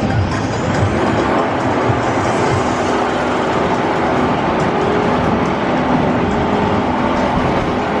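Spinball Whizzer spinning roller coaster running on its steel track, a steady loud noise, with music mixed under it.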